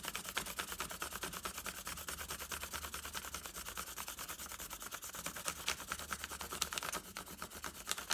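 Side of a coloured pencil rubbed fast back and forth over thin paper laid on a textured object, a quick steady run of scratchy strokes as a texture rubbing builds up.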